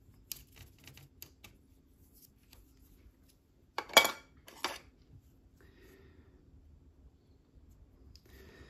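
Light clicks and taps of small hard objects being handled on a desk, with a louder clatter about four seconds in and a smaller knock just after it.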